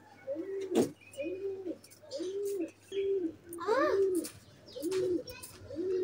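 A bird cooing over and over in a steady rhythm, about one coo a second, each coo a short rise and fall. A single sharp click about a second in is the loudest sound.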